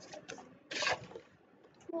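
Stiff paper letter cards being flipped over on a wooden blending board: a few light taps, then one short papery swish a little under a second in and a softer one just after.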